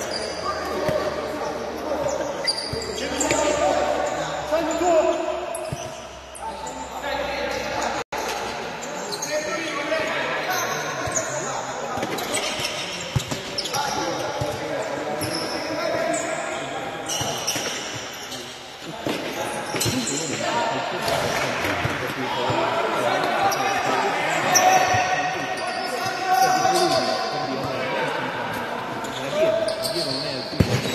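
Futsal ball being kicked and bouncing on an indoor court, with players shouting to each other, all echoing in a large hall.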